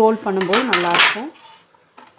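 A stainless steel rolling pin rolling back and forth over dough on a steel plate, the metal squealing in wavering tones that rise and fall with each stroke. It stops a little over a second in.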